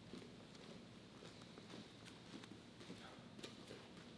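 Near silence: room tone with faint, scattered soft taps of bare feet walking on gym mats.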